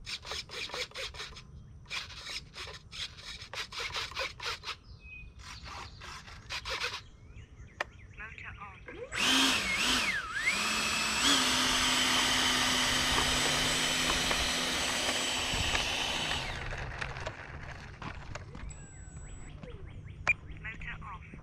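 Electric ducted fan of an E-flite F-16 Thunderbird 70 mm model jet run up on the ground for about seven seconds: a loud, steady whine whose pitch dips and recovers near its start, then spins down. Before it, insects chirp in rhythmic pulsed bursts.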